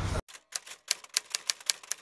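Typewriter keys clacking in a quick, irregular run of strikes, about five a second. The run starts just after the outdoor background sound cuts off abruptly, a moment in.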